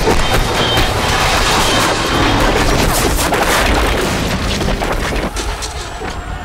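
Film sound of a Black Hawk helicopter crashing and skidding through rubble: a loud, dense rumble full of crashing impacts and scraping debris, easing off near the end, with a music score underneath.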